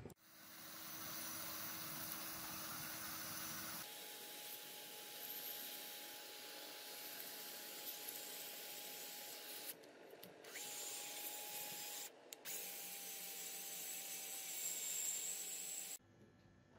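Sandpaper hissing against a metal lighter body spun in an electric drill, with the drill's steady motor whine underneath. The whine steps up in pitch about a quarter of the way in, and the sound cuts out briefly twice later on.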